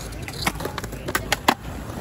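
Skateboard urethane wheels rolling on smooth concrete, the board held on its back wheels in a manual, a steady low rumble. Several sharp board clacks sound over it, the loudest about one and a half seconds in.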